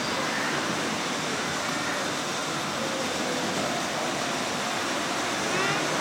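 Steady hall background noise at a model railway exhibition: a constant wash of noise with faint distant voices in it.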